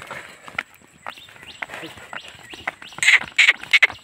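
Hooves of a Hallikar bull clopping on an asphalt road as it walks. Scattered at first, the knocks turn into a loud, quick, even run of steps about three seconds in.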